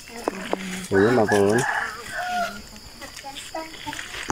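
A rooster crowing once, about a second in.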